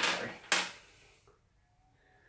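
Two short handling noises about half a second apart, as small items are picked up and moved on a bullet-casting bench.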